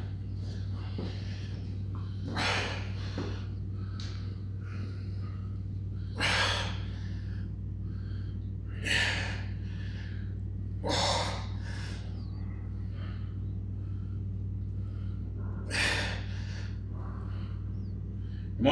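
A weightlifter's hard, sharp exhales, a handful of them a few seconds apart, one with each rep of a heavy incline dumbbell press. A steady low hum runs underneath.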